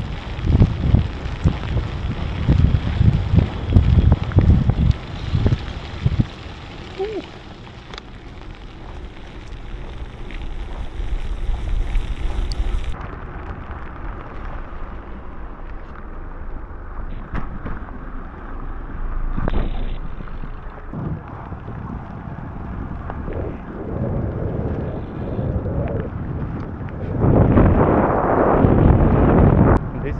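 Wind buffeting the microphone of a bike-mounted camera on a road bike ridden through heavy rain, over a steady hiss of tyres on wet road. The buffeting is strongest in the first few seconds, and a louder rush of noise comes near the end.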